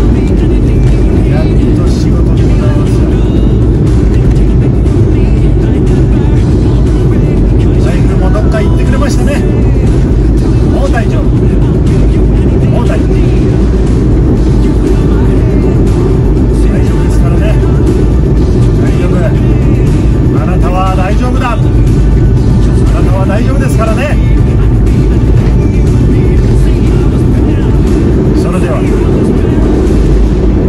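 Steady low rumble of road and engine noise inside a moving car's cabin, with a man's voice and music heard faintly over it at times.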